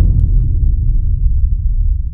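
Deep rumbling boom from a logo sound effect: it hits suddenly with a short crack and rolls on loud and low.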